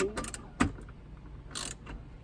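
13 mm wrench tightening the nut on a car battery's positive terminal clamp: a few sharp metal clicks in the first second, then a short rasp of the tool working.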